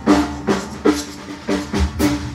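Large acoustic drum kit played hard: a steady run of heavy drum strokes backed by bass drum, about three a second, each stroke ringing briefly.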